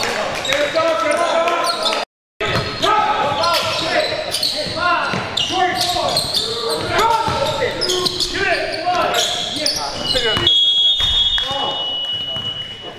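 Indoor basketball game sounds: a basketball bouncing on a hardwood gym floor, sneakers squeaking and players calling out indistinctly. A steady high-pitched tone sounds from about ten and a half seconds in.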